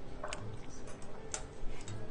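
A few short, sharp clicks and smacks of a mouth chewing sushi, spread over two seconds above a low background hum.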